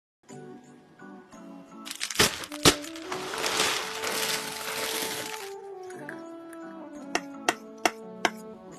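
Background music with held notes, overlaid with a loud hissing swell from about two seconds in and several sharp cracks: two near the start of the swell and three more near the end.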